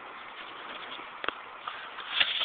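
Steady outdoor background hiss with a single short knock just over a second in.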